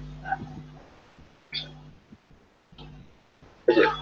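A man's voice heard over a video-call microphone: a few short, isolated vocal sounds in quiet gaps, with a low hum that cuts in and out with them, then a spoken "okay" near the end.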